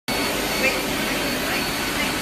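Steady blowing noise from a laser hair-removal machine running during treatment, with a faint high tone coming and going.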